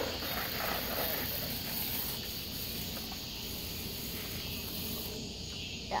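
A steady, high-pitched insect chorus chirring, easing off a little near the end, over a low rumble.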